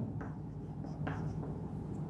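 Chalk writing on a chalkboard: a few short, soft strokes as letters are written.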